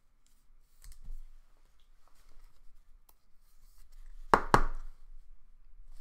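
Plastic handling noise as a trading card is slid into a soft penny sleeve and a rigid plastic toploader: faint rustles and soft knocks, then two sharp clicks close together a little past four seconds in.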